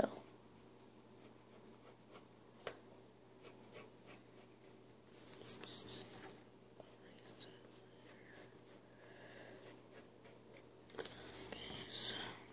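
Pencil scratching on paper in faint, uneven strokes, louder about five seconds in and again near the end.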